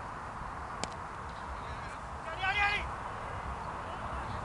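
A cricket bat strikes the ball with one sharp crack a little under a second in, over a steady outdoor hiss. About a second and a half later comes one short, loud call, the loudest sound here, just before the batsmen set off running.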